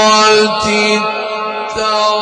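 A man's voice reciting the Quran in the melodic Egyptian tajweed style, holding one long, steady note through a microphone.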